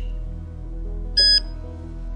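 A single short, high electronic beep from the Remunity Pro infusion pump about a second in, as it powers up on its freshly inserted battery, over soft background music.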